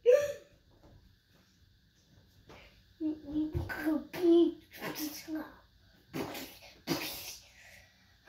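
A young boy's voice in short, playful bursts of vocal noises, with a pause of a couple of seconds after the first one.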